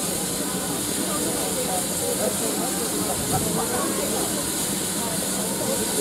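Steady high hiss of steam escaping from the standing LMS Jubilee 4-6-0 steam locomotive 45699 Galatea, with indistinct voices of people nearby.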